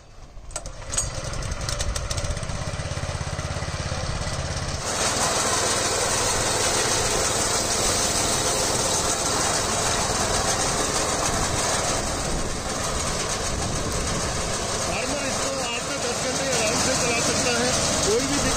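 Small engine of a walk-behind power reaper started with a few sharp clicks, catching about a second in and idling low. About five seconds in it is throttled up to a loud, steady fast run that holds.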